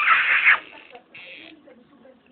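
A loud kiss smacked close to the microphone, a noisy burst lasting about half a second at the start.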